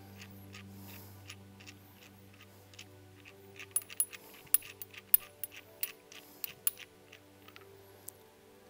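Light metallic clicks and ticks, most of them from about three and a half seconds in, as the metal anvil is unscrewed by hand from the nose housing of a Stanley PB2500N riveting tool. Soft background music with held notes runs underneath.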